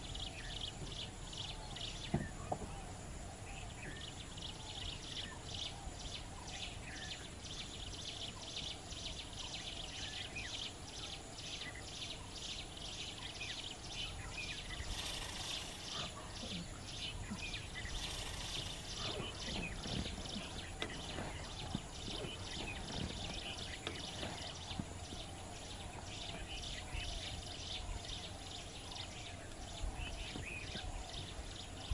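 Outdoor natural ambience: a steady high-pitched chirping that pulses about twice a second, over a low background rumble.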